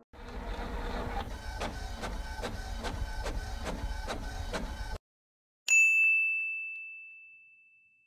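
Logo-animation sound effects: an even mechanical clacking, about two to three strokes a second over a low rumble, that cuts off suddenly after about five seconds. After a moment's silence comes a single bright bell ding that rings on and fades away slowly.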